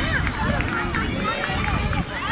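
Several high children's voices shouting and calling over one another, with irregular low thuds and rumble underneath.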